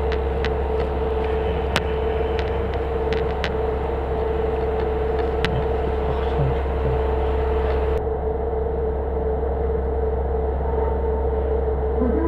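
Diesel railcar idling while it stands at the platform, heard inside the car: a steady low drone with a constant hum, and a few light clicks in the first half.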